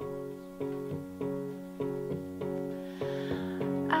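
Keyboard accompaniment re-striking a sustained chord in an even pulse, about every 0.6 s, in a gap between sung lines of a slow pop song. A breath is drawn and the woman's singing voice comes back in at the very end.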